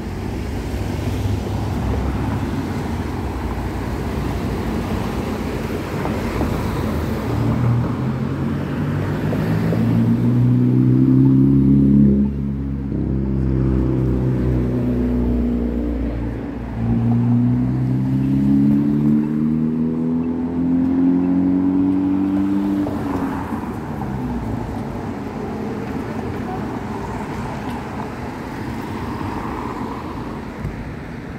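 Street traffic with a motor vehicle's engine accelerating, its pitch climbing from about eight seconds in to its loudest point around twelve seconds. The pitch climbs a second time from about seventeen to twenty-three seconds, over a steady background of traffic noise.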